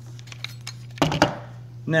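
A few light clicks, then a short clatter about a second in, as a perforated metal gusset plate is handled and set against a plastic game controller, over a steady low hum.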